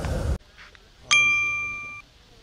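A single bell-like ding, struck once about a second in and ringing on with a clear steady tone as it fades, cut off suddenly at the end. A man's speech ends just before it.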